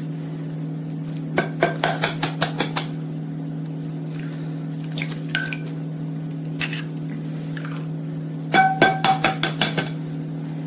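Eggs tapped against the rim of a stainless steel mixing bowl to crack them: a quick run of about eight clinking taps about a second and a half in, a few single taps in the middle, and a second run of about eight taps near the end, the bowl ringing briefly. A steady low hum runs underneath.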